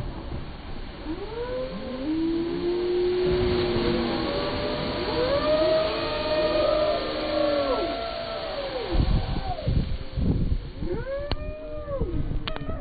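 A splash boat's wave crashes over the bank with a rush of water and spray, while several people scream and shriek in overlapping rising-and-falling cries. A few low thumps come about nine to ten seconds in.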